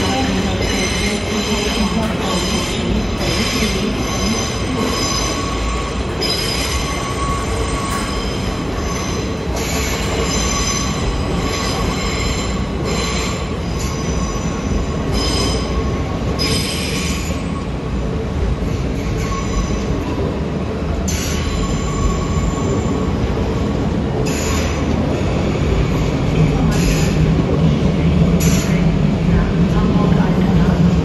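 DB ICE high-speed train moving slowly through the station on curved track, a steady rumble with high-pitched wheel squeal coming and going. The low hum swells near the end.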